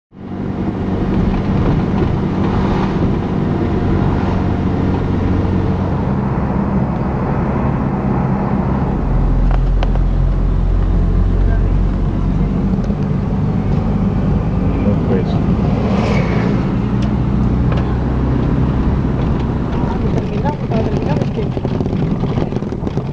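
Car engine and road noise heard from inside the cabin while driving, a steady low drone that grows heavier for a few seconds in the middle.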